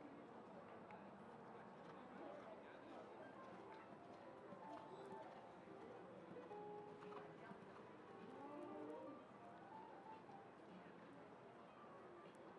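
Faint show-ring ambience: distant music and indistinct voices, with the soft hoofbeats of a cantering horse on sand footing.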